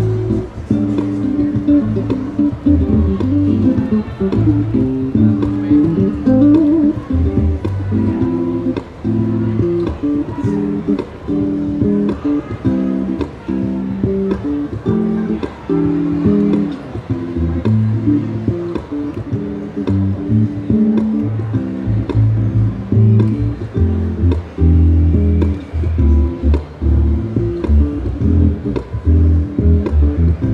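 Extended-range Wing bass played through a Hartke TX600 bass amp head and Hartke cabinet: chords and melodic lines plucked with both hands over low bass notes, the low notes heavier in the second half.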